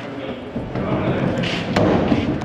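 Loaded slide-out cargo tray in a pickup bed being pulled out on its rails: a continuous rolling rumble, with a sharp knock near the end.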